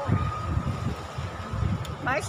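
Wind buffeting the microphone outdoors in gusty, stormy weather, making an uneven low rumble, with a faint steady high tone running through most of it.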